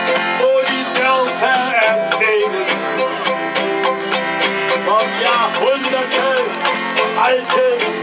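Live folk music: a violin plays a wavering melody over a strummed string accompaniment in an instrumental passage of a song, with a voice coming back in near the end.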